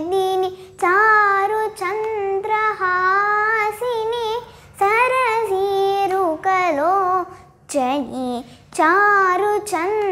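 A young girl sings a devotional song in praise of Saraswati, in long held phrases with gliding, ornamented notes and brief pauses for breath between them.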